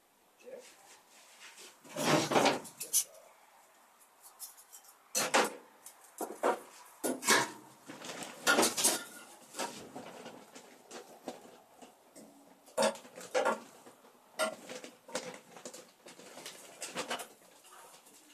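Expanded polystyrene foam crunching and squeaking in irregular bursts, about a dozen, with short quiet gaps between.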